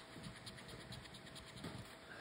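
A coin scraping the scratch-off coating of a paper lottery ticket in faint, quick strokes, several a second.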